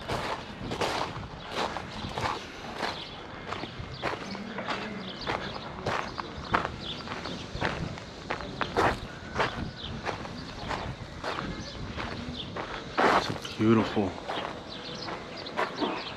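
Footsteps on a gravel path at a steady walking pace, with a brief voice sound near the end.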